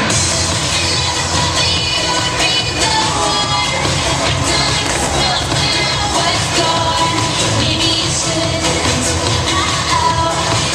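Pop song with singing and a steady beat, playing loudly through a sound system, with crowd noise from the audience beneath it.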